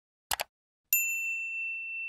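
Subscribe-button animation sound effects: a quick double click, then a single bright bell-like notification ding that rings on steadily.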